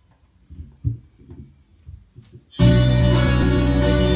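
Faint low knocks and handling noise, then about two and a half seconds in a recorded instrumental backing track starts abruptly and runs loud and steady.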